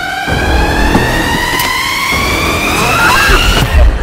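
Horror-trailer riser sound effect: a single high tone with overtones climbing slowly and steadily in pitch over a low rumble, cutting off abruptly near the end with a loud low hit.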